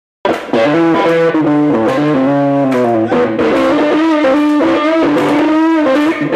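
Blues band playing live: an electric guitar lead over bass and drums, cutting in abruptly mid-song. Near the end the guitar holds one note with a wavering vibrato.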